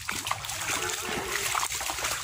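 Rain falling on leaves and a tin roof: a steady hiss with many small drips and splashes.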